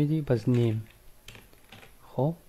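A few faint computer-keyboard keystrokes in the second second, after a man's voice talking through the first part.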